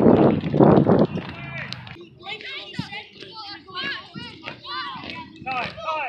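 Voices at a youth soccer game: a loud burst of cheering and shouting in the first two seconds, which stops abruptly, then many overlapping, often high-pitched voices calling out.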